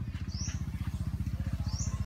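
Electric air pump for pond aeration running with a rapid, steady low throb, while a bird gives two short rising chirps.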